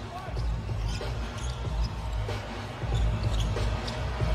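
A basketball dribbled on a hardwood court during live game play, a few short knocks over a low, steady arena rumble.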